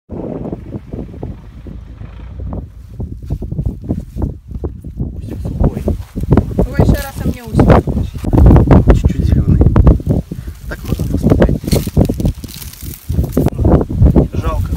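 Men's voices talking, with wind rumbling on the microphone.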